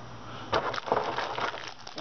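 Packaging being handled: a run of irregular crinkling and crackling, starting about half a second in and easing off near the end.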